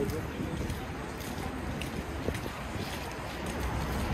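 City street ambience on a wintry avenue: a steady low rumble of traffic with wind buffeting the microphone, and a few faint footsteps and passing voices.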